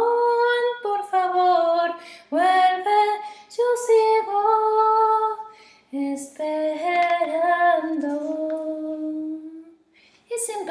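A woman singing solo in Spanish: sung phrases with brief breaks about two and six seconds in, ending on a long held note near the end.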